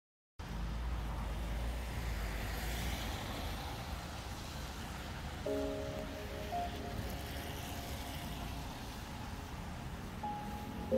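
Street traffic on a rain-wet road: a steady hiss of tyres with low engine rumble, after a brief gap of silence at the start. Light background music with held notes comes in about halfway through.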